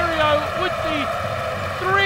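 A raised male commentator's voice in short excited calls, over the steady noise of a basketball arena crowd.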